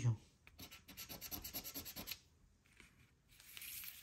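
Scratch-off lottery ticket being scratched: quick scraping strokes across the coating for about a second and a half, then a shorter spell of scraping near the end.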